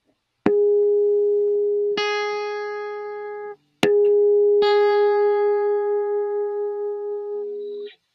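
Electric guitar playing the fifth harmonic, a pure sustained tone that is the major third of the chord, with the nearest fretted note then added over it at almost the same pitch, done twice. The fretted note is slightly sharper than the harmonic, so in the second pass the two waver against each other in slow, even beats as they ring out.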